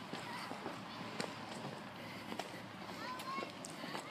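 Faint distant voices and a few light scattered clicks over a quiet outdoor background.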